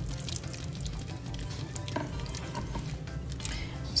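Spatula stirring a thick cream-cheese sauce with chopped chicken and ham in a skillet: soft wet scrapes and small clicks.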